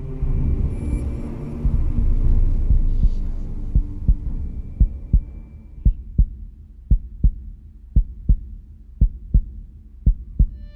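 A heartbeat sound effect: paired low thumps, lub-dub, about once a second, over a low rumble that swells and then fades in the first few seconds.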